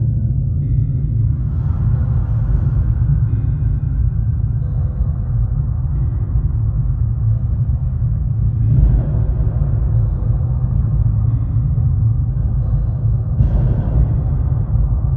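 Dark, ominous background music built on a deep, steady low rumble, with swells about a second and a half in, near the middle and near the end.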